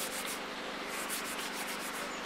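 Hands rubbing back and forth, rolling a ball of PowerBait trout dough between the palms into a club shape; a steady rubbing of skin on skin.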